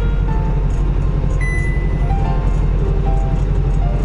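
Music with a few sparse held notes over the steady low drone of a semi truck's engine and road noise heard from inside the cab.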